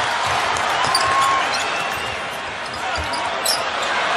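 Arena crowd noise with a basketball being dribbled on a hardwood court: a few separate bounces, and a couple of short high sneaker squeaks.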